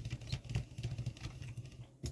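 Light, irregular clicks and taps of close handling, over a low steady hum.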